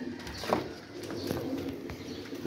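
Domestic pigeons cooing softly in their loft, with one sharp click about half a second in.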